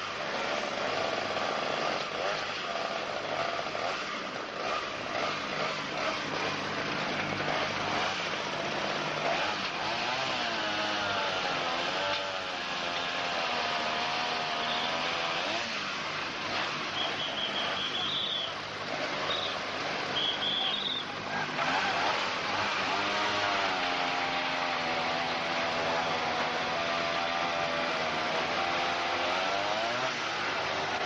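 Motor vehicle engine running, its pitch rising and falling as it works, with brief high chirps partway through.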